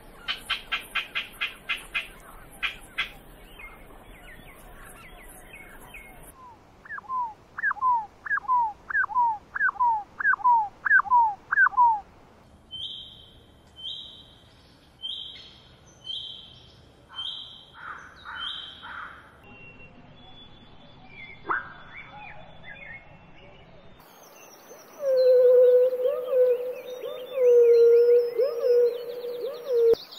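A run of different bird calls cut one after another: first a fast series of sharp notes, then about eight repeated calls that rise and fall in pitch, then a string of short high whistled notes, and in the last few seconds a lower, loud call.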